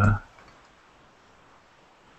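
A man's drawn-out 'uh' trailing off just after the start, then a faint steady hiss of an open call microphone.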